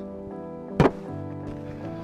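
A single sharp thump a little under a second in: a plastic bee package knocked down onto the hive's metal-topped cover to drop the bees to the bottom of the package. Steady background music plays throughout.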